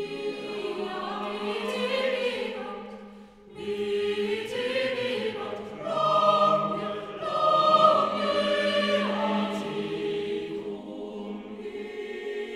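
Mixed chamber choir singing a cappella in sustained chords. There is a short break about three and a half seconds in, and the fullest, loudest chords come around six to eight seconds in.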